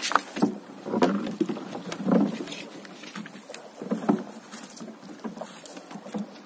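A floating nylon gill net being paid out over the side of a small boat: splashes and rustles of the net and its floats going into the water. There is a burst about every second at first, and another about four seconds in.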